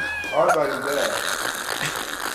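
A person's high-pitched squeal, sliding down in pitch, followed about half a second in by a shorter rising-and-falling squeak.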